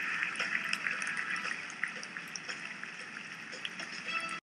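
Fizzing liquid: a steady hiss with many tiny crackles and pops scattered through it.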